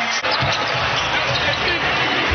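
Basketball game sound: a ball bouncing on a hardwood court amid arena noise, broken by an abrupt edit cut just after the start.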